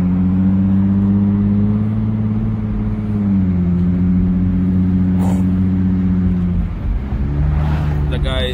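Car engine heard from inside the cabin as the car drives off, a steady hum whose pitch steps down to a lower note about three seconds in and eases off again near the end.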